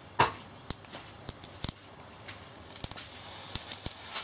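A pencil's graphite core heating under a 240-volt mains current: a sharp click just after the start as the supply is switched on, scattered snaps and crackles, then a hiss that builds from about three seconds in as the pencil starts to smoke heavily.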